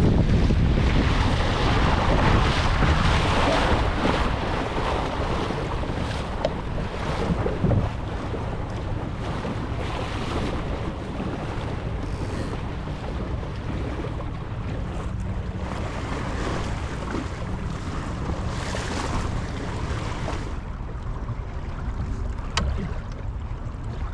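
Wind buffeting a camera microphone over the rush and splash of water along a Laser sailing dinghy's hull while under sail. It is loudest for the first few seconds, then eases to a steadier wash, with a few sharp clicks.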